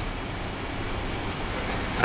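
Steady room noise: a low hum under an even hiss, with no distinct events.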